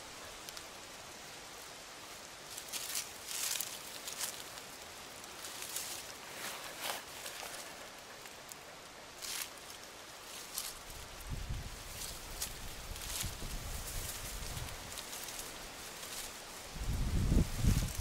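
Hands scraping and sifting through loose, dry soil and roots to unearth small ñampi tubers, with scattered soft crackles and rustles. A low rumble comes in about eleven seconds in and grows louder near the end.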